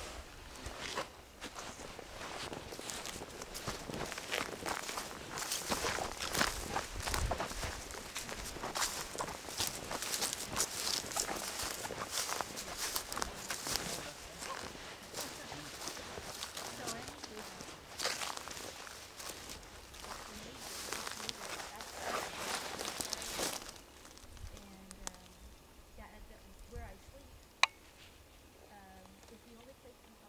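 Footsteps crunching and rustling through dry grass and dead brush, a dense run of crackly steps that stops about four-fifths of the way in. A single sharp click comes near the end.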